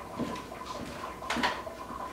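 Light handling sounds of food prep at a kitchen sink: two brief soft knocks, one just after the start and one past the middle, over a faint steady hum.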